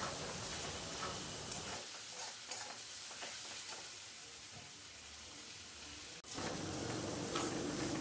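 Spice masala of onion, tomato and ground spices sizzling in oil in a steel kadai while a metal spatula stirs and scrapes it, with light scraping ticks: the masala being fried down until it cooks through and comes away from the sides of the pan.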